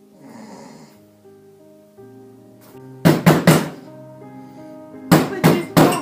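Heavy pounding on a door: three loud knocks about three seconds in, then three more about two seconds later, over soft, steady background music.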